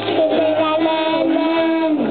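A group of young children singing a song together in unison, holding a long note toward the end.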